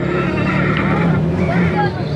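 A steady low engine hum, with people talking faintly in the background.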